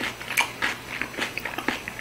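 A person chewing food with the mouth full: wet smacking and clicking mouth sounds, several a second, picked up close.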